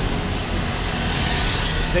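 Steady rumble of street traffic noise.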